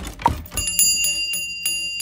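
Small brass shop-door bell on a sprung bracket jangling: its clapper strikes about four times a second from about half a second in, leaving a high, steady ringing tone.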